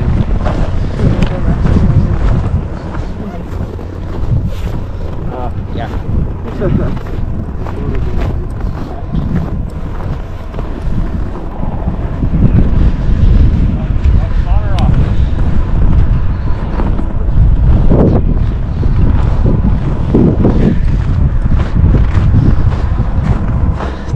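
Wind buffeting the microphone with a loud, uneven low rumble, and brief snatches of people's voices now and then.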